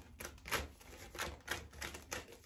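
A deck of oracle cards being shuffled by hand, giving irregular light clicks and taps, about three a second.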